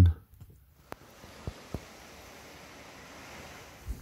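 Faint, steady rushing of a mountain stream running through the ravine, with a few soft clicks early on. It starts about a second in, after a brief silence.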